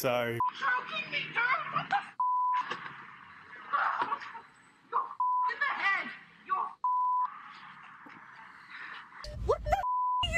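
Agitated speech from news footage cut by short, steady, single-pitch censor bleeps over swear words, about five times.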